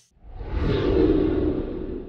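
Edited title-card sound effect: a low whooshing rumble that swells in just after the start and holds as the heading text appears.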